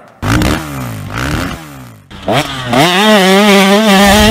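Dirt bike engine revving: several quick rises and falls in revs, then the revs climb about two seconds in and hold high and loud.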